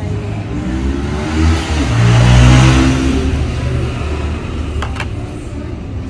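A motor vehicle's engine passing close by, its pitch rising as it accelerates, growing louder to a peak about halfway through and then fading away. A sharp click sounds near the end.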